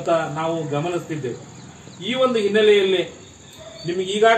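A man speaking in Kannada close to the microphone, in two phrases with a pause between, over a steady high-pitched insect drone like crickets.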